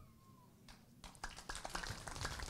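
Pause in a speech under a reception tent: a faint tone glides down and fades within about half a second, then near silence. From about a second in come scattered light clicks over a faint murmur of the seated guests.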